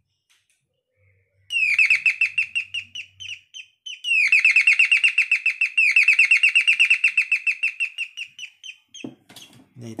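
Electronic calling bell playing its bird-chirp tune through its small speaker as its leads are connected to the supply: two long runs of rapid, high, quickly falling chirps, the first starting about a second and a half in, the second about four seconds in and thinning out near the end.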